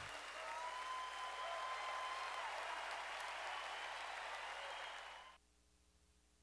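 A steady noisy wash with a faint held tone, part of the countdown's background soundtrack, that cuts off abruptly a little over five seconds in.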